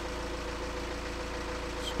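Car engine idling steadily, a low, even hum with a faint tone above it.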